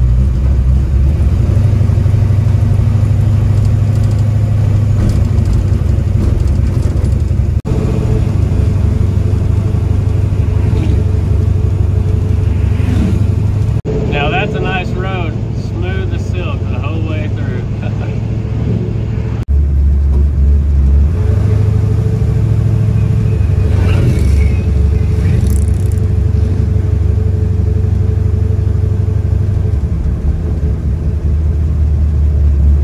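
Old Chevy C10 pickup truck's engine and road noise heard from inside the cab while driving, a steady deep drone that changes abruptly a few times.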